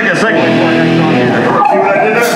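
Live hardcore punk band playing: electric guitar with a man's vocals into the microphone, loud and continuous.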